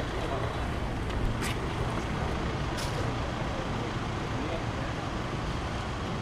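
Steady low rumble of street traffic, with two faint brief clicks about one and a half and three seconds in.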